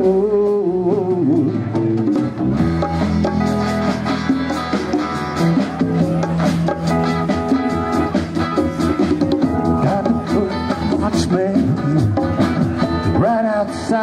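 Live band playing a rock song: Rickenbacker electric bass, guitars and drum kit in an instrumental stretch between sung lines.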